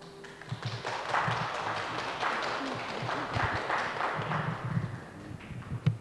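A small audience clapping as the singing stops, fading away about five seconds in, with low thumps and knocks of movement near the end.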